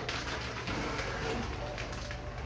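A plastic-wrapped metal light stand being slid out of a long cardboard box: rustling of the plastic wrap and the stand scraping against the cardboard.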